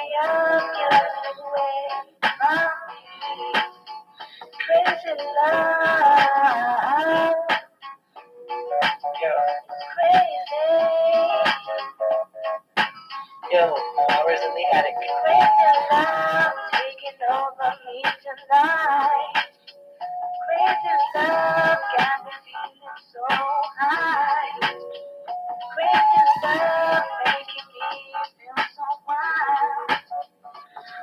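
Music: a wavering melodic lead line in phrases a few seconds long, with little bass.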